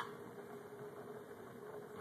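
Small computer fan under a forced-air wood gas stove running at raised speed, blowing air into the burning wood: a faint steady tone over a soft rushing noise.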